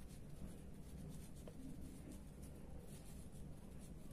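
Pen writing on paper, faint scratching strokes as words are written out.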